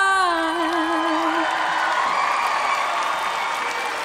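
A young female singer holding a final sung note with a wide vibrato over the backing music, the note fading out about a second and a half in as audience applause and cheering swell.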